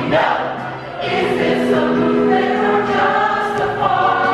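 Large mixed chorus of men's and women's voices singing a show tune with musical accompaniment; after a brief dip about a second in, the voices hold long sustained notes.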